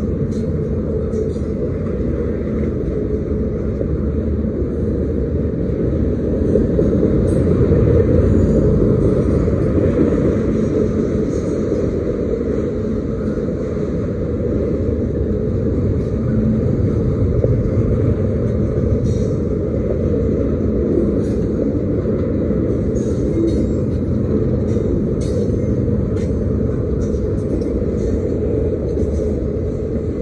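Freight train cars rolling past at speed, double-stack container cars and then autorack cars: a steady, loud rumble of steel wheels on rail, with scattered short high clicks and squeaks from the running gear.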